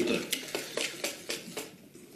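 A spoon stirring batter in a white plastic mixing bowl: a run of quick taps and scrapes against the bowl that grow fainter toward the end. The batter is being stirred until it thickens.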